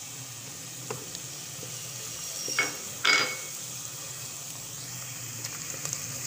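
Sliced onions frying in hot oil in a nonstick pot, a steady sizzle, on their way to golden brown. A wooden spatula stirs them, with two louder stirring scrapes about two and a half and three seconds in.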